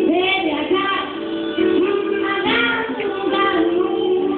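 Blues harmonica solo with bent, sliding notes over strummed acoustic guitar, played live in a small room.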